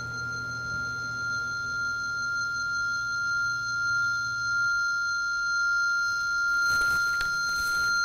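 A steady, high-pitched ringing tone held over a low drone, the film soundtrack's tension effect; the drone cuts off suddenly a little past the middle, and noisy swells build near the end.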